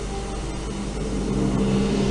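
Background music: a steady low drone of held tones, growing a little louder through the pause.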